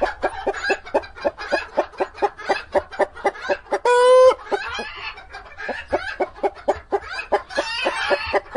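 Hens clucking in a rapid run of short calls, about four a second, with one longer, louder call about four seconds in.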